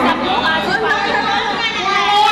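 Several people talking at once.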